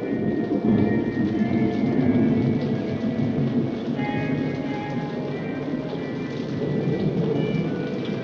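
Heavy rain falling with a low rolling rumble of thunder, loudest in the first few seconds, with faint music under it.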